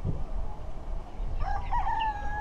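A rooster crowing: one long call starts about one and a half seconds in, rises at first and then holds a steady pitch, over a steady low rumble.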